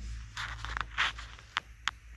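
Cloth rag wiping over a metal breaker panel's face: a few short brushing scrapes, then two sharp clicks near the end.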